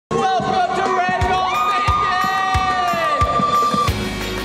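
A small group of young people cheering and yelling together, with one long high whoop held for about two seconds that cuts off just before the end. Under the cheering, a low thump comes about every two-thirds of a second.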